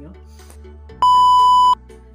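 A loud, steady, high-pitched electronic beep, one tone lasting about three-quarters of a second and starting about a second in, over soft background music.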